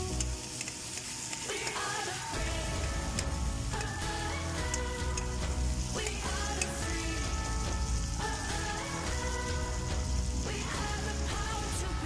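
Background pop music, with tomatoes and onions sizzling in hot oil in a wok as a metal spatula stirs them.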